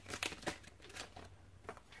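Stack of oracle cards spilling from the hands onto a table strewn with cards: a few faint light slaps and rustles, mostly in the first second.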